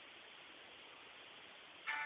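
Faint steady hiss of room tone; right at the very end a song starts playing through a phone's small speaker.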